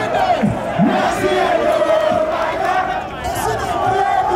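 Large crowd of football fans chanting and shouting together in celebration, many voices over a steady held note.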